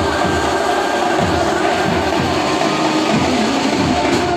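Banjo party band playing: a wavering amplified melody carried over drums.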